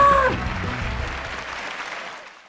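A held, pitched note cuts off just after the start, and applause with music behind it runs on, fading steadily toward the end.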